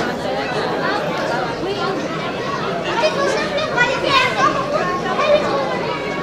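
Many people talking at once: overlapping chatter of voices with no single speaker standing out, at a steady level.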